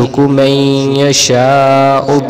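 A man's voice reciting an Arabic supplication in a drawn-out, chanted style, with long held syllables.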